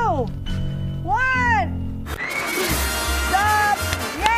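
Voices calling out the last counts of a countdown, each a long rising-and-falling call about a second and a half apart, over background music. About two seconds in, a sudden loud noisy burst as time runs out, then excited voices.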